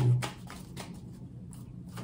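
Tarot cards being handled, a run of soft, quick clicks, several a second, with a faint low hum under it.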